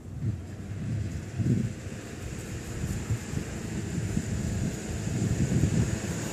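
Wind buffeting the microphone: an uneven low rumble that rises and falls.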